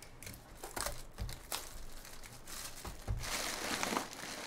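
Crinkling, scraping and light taps as a sealed cardboard box of baseball cards is handled and opened, with a louder stretch of crinkling about three seconds in.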